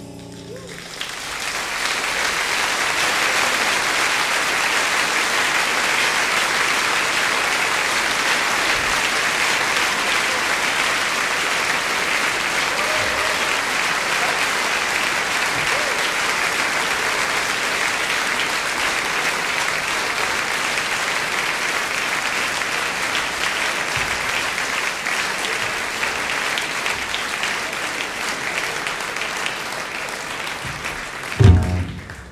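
Large concert-hall audience applauding steadily for a long time. The applause begins about a second in as the last note of the band dies away, and eases off slightly near the end.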